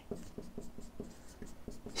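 Stylus writing on a tablet or pen screen: a faint run of light, irregular taps and scratches as handwritten strokes are drawn.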